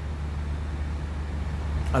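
A steady low hum with a faint hiss above it fills a pause in speech. A man's voice resumes near the end.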